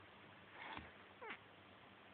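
A kitten gives one short, faint mew about a second in, after a brief soft noisy scuffle.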